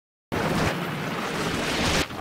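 Studio logo sound effect: a loud rush of noise that starts suddenly about a third of a second in, swells toward the end and cuts off abruptly.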